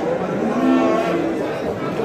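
A cow mooing once, a single long call lasting about a second, with people talking in the background.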